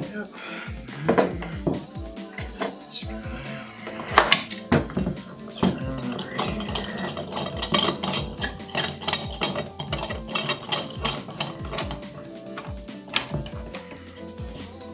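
Steel C-clamps being handled and screwed down on a clamped wooden body: a string of sharp metal clinks and knocks, over steady background music.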